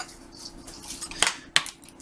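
A few light clicks and knocks in the second second, from ingredients being put down and picked up on a kitchen worktop.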